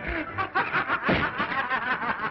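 Laughter in quick, closely repeated bursts, on an old film soundtrack with a dull, limited top end.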